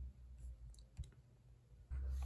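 A single short computer click about a second in, clicking to place an online order, with a couple of fainter ticks before it.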